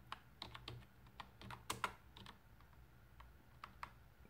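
Faint keystrokes on a computer keyboard, a string of separate, irregularly spaced clicks as a short command is typed.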